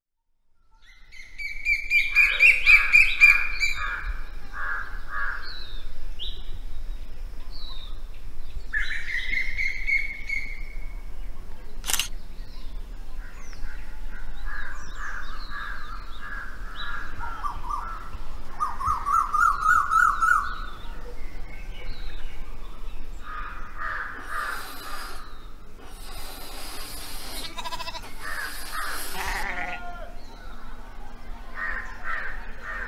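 Several birds calling and chirping, with trills of rapid repeated notes and short sweeping whistles, and harsher, noisier calls near the end. A single sharp click comes about twelve seconds in.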